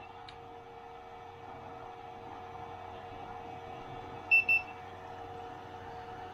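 Two short high beeps in quick succession about four seconds in, from a handheld infrared thermometer, over a steady hum with a couple of steady tones from the running cooling setup.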